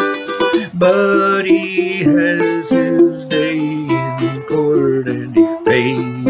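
Ukulele played in a steady folk-song accompaniment, picked and strummed chords. A man's voice sings over part of it.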